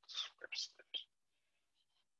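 A man whispering to himself under his breath, briefly, for about a second.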